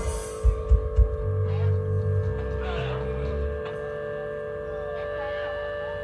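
Band line check through the PA: a few deep kick-drum thumps in the first second, then low held bass-guitar notes, over a steady ringing hum.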